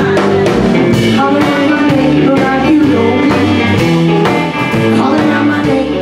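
A live band playing: electric guitars, bass guitar, drum kit and keyboard, with a steady beat and a moving bass line.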